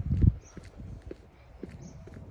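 Footsteps on a brick-paved path, about two steps a second, with a loud low thump just at the start.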